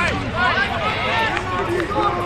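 Several voices calling and shouting across a football pitch, overlapping one another, over a steady low hum.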